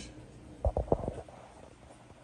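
Four or five soft, dull knocks in quick succession, a little over half a second in, over quiet room tone.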